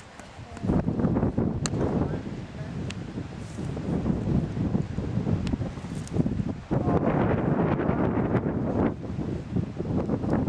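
Wind buffeting the microphone: a heavy low rumble that rises and falls in gusts, strongest about a second in and again for a couple of seconds near the end, with a few faint clicks.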